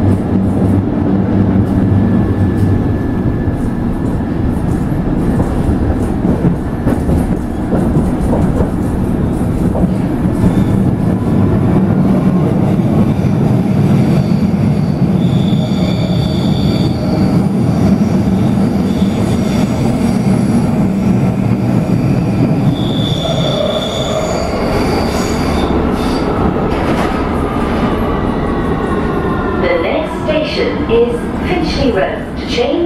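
London Underground S Stock train heard from inside the carriage, running through a tunnel: a loud, steady rumble of wheels and running gear, with two short high-pitched wheel squeals around the middle. Near the end a falling whine comes in as the train slows.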